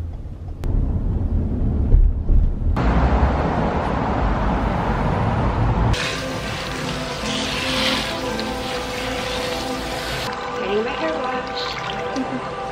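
Low road rumble inside a moving car for about the first half, then a sudden switch to background music over water running from a salon shampoo-bowl spray nozzle.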